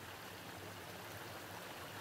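Faint, steady hiss of outdoor background noise with no distinct events.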